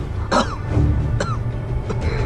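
Dramatic background score over a deep, steady low rumble, with two short vocal sounds, like brief coughs, about half a second and just over a second in.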